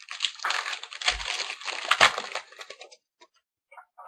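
Hockey trading cards and their pack being handled, with crinkling and rustling and many small crackles. It stops about three seconds in.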